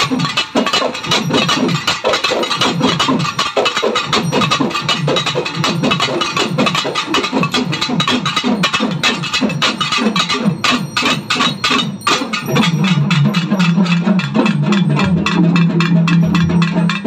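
A group of pambai, the Tamil paired cylindrical drums, played together with sticks in a dense, fast rhythm, with low booming tones that slide in pitch. From about two-thirds of the way through, a steady low hum holds under the strokes.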